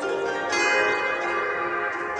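Instrumental backing music between sung lines: sustained chord notes, with a new chord coming in about half a second in.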